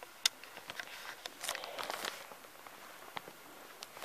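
Quiet footsteps and small clicks of camera handling in a small, quiet room, coming at irregular moments, with a soft rustle about halfway through.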